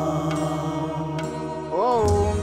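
Devotional background music: a long held chanted note over a steady low drone, with a new sung phrase rising and falling near the end.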